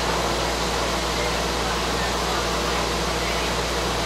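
Steady rushing noise with a low, even hum under it, unchanging throughout: the cooling fans of an open test bench running.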